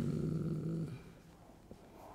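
A man's drawn-out, low, level-pitched hesitation sound ("uhhh") that trails off about a second in, followed by quiet room tone with a faint click.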